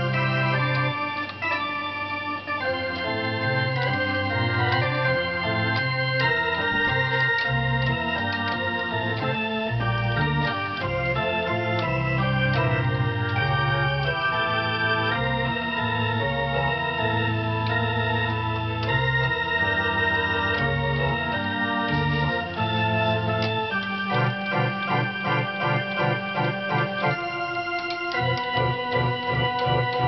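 Organ playing, with held bass notes under moving chords and melody. In the last few seconds the chords turn into quick repeated notes.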